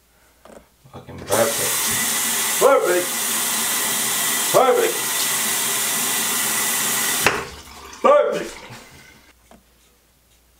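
Bathroom tap running into the sink for about six seconds, then shut off suddenly. Three short vocal sounds rise over it, one after the water stops.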